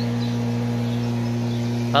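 A steady low hum, unchanging in level and pitch, with a fainter higher tone above it.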